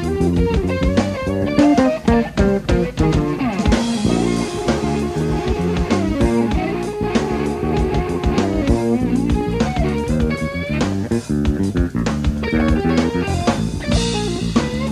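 A band plays live funk: an electric guitar plays bent notes over electric bass and a drum kit.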